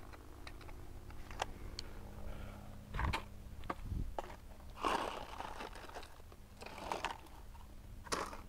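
Quiet handling sounds: a few light clicks, then three short rustles of dry leaf litter about two seconds apart as someone crouches and works at the ground.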